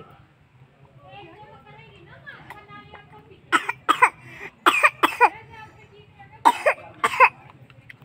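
A dog barking in short, sharp bursts, mostly in quick pairs, starting about three and a half seconds in and stopping shortly before the end.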